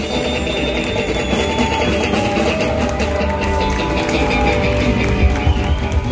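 A live rock band playing on stage: electric guitars with held notes over a steady beat.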